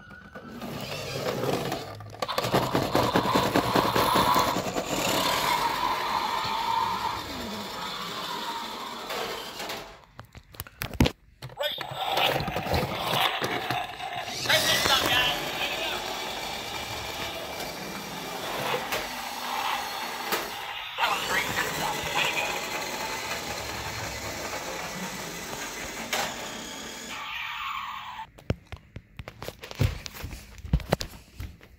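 Battery-powered toy car playing its electronic sound effects as it drives along a hard floor.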